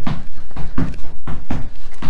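Feet landing on an exercise mat over a wooden floor while skipping on the spot: a steady rhythm of thuds, about four a second.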